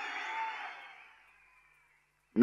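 The echo of a man's voice over a public-address system fades away within about a second, then there is silence.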